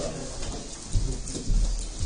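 Low rumbling thumps right at the microphone, the first about a second in and a heavier one half a second later, as a person passes close by and brushes the camera.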